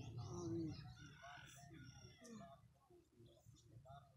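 Faint, indistinct murmur of a large outdoor crowd praying under their breath, with many short voice-like sounds overlapping.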